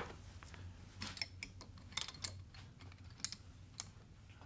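Faint, scattered light metallic clicks of a small socket wrench working a nut on a repair head stud in an Atomic 4 cylinder head, snugging it just above finger tight.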